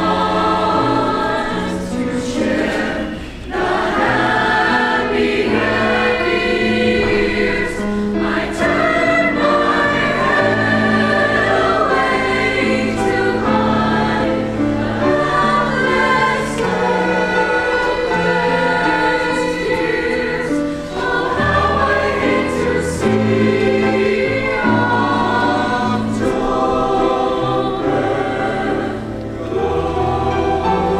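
Mixed choir of high school singers, women and men, singing a slow piece in parts, with held chords that change every second or so. The phrases break briefly about three seconds in and again near the end.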